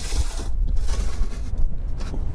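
Aluminium ladder of a rooftop tent being slid out across the tent's metal shell, a scraping hiss in the first half second and then a few light clicks. Wind rumbles on the microphone throughout.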